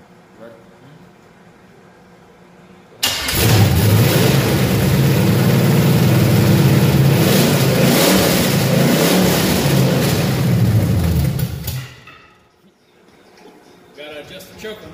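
A newly installed carbureted V8 in a 1974 Chevy Caprice fires up about three seconds in, runs loudly through open headers with no exhaust for about nine seconds, then is shut off. This is its first start after the install, running with a choke that still needs adjusting.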